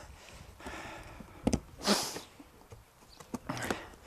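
Cardboard box being broken down flat by hand: a sharp crack of the cardboard about a second and a half in, a short scraping rasp just after, and a few light clicks near the end.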